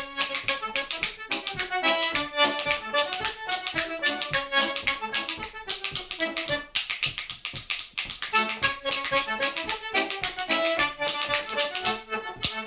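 A traditional dance tune played on a single-row diatonic button accordion, with bright reedy melody lines, accompanied by hand-held percussion clacking a steady, quick rhythm.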